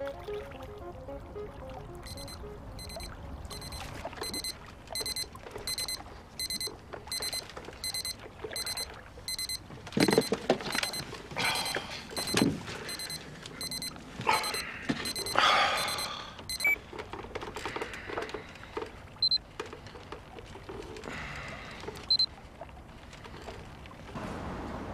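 Electronic pager beeping: a long run of short, high, evenly repeated beeps that stops suddenly about two-thirds of the way through. Bedclothes rustle as a sleeper stirs under the beeping.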